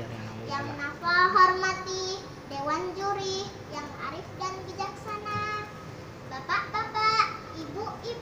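A young girl's voice over a microphone, speaking in a drawn-out, chant-like preaching cadence with several long held phrases.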